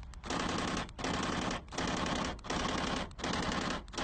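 A car's electric door-locking mechanism, worked from the key fob, chattering in five rapid rattling bursts of about half a second each, repeating with short gaps: a malfunctioning door actuator.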